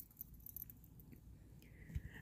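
Faint, irregular scraping and light ticks of a stir stick against the inside of a small cup while mica powder is mixed into epoxy resin.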